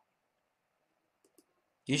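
Near silence in a pause of speech, broken by two faint, short clicks about a second in. A man's voice starts just before the end.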